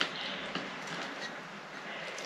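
Faint handling sounds of fingers pressing a glue-soaked paper napkin piece onto a small glass globe, with a light tap at the start.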